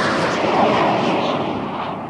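A whoosh sound effect for a TV ident and title-card transition: a rush of noise like a passing jet that fades and grows duller over two seconds.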